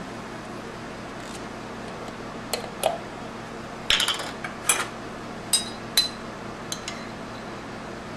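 Metal screw lid twisted off a glass jar and set down on a wooden tabletop, with the jar handled after: a scattered series of clicks and clinks of metal and glass, a few ringing briefly.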